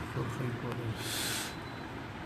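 A man's low voice carries on faintly and trails off, with a short hiss about a second in.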